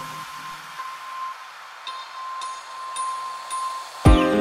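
Quiet breakdown in a kawaii future bass track without drums or bass: a held high synth tone over a soft wash, with a few sparse bell-like notes.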